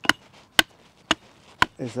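Axe chopping the end of a wooden post to sharpen it to a point: four sharp strikes evenly spaced, about two a second.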